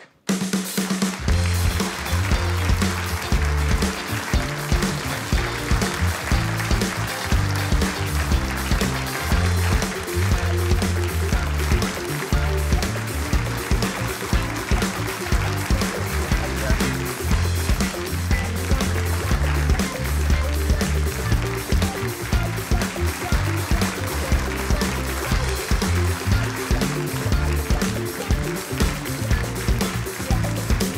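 Live band of keyboards, electric guitar, bass guitar and drum kit playing an upbeat instrumental with a steady beat and a moving bass line.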